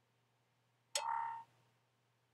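A short computer system sound about a second in, a sharp click-like onset with a brief ringing tone of about half a second. It comes as the Finder file copy finishes.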